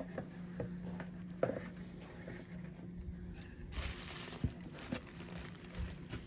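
Tissue paper and a cardboard box rustling and crinkling as hands rummage through a gift box, with scattered light knocks. A steady low hum runs underneath.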